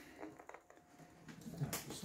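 Mostly quiet room with a few faint clicks of hand contact on the LEGO baseplates; a low voice starts near the end.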